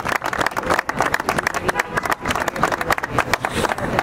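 Small outdoor crowd applauding, many overlapping hand claps.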